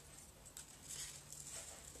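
Near-quiet room tone with a faint steady low hum and a few soft, faint handling sounds.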